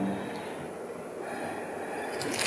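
Quiet room tone with faint rustling of thin Bible pages being turned.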